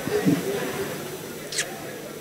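A faint murmur of voices, with a short voiced sound near the start and a brief hiss about one and a half seconds in.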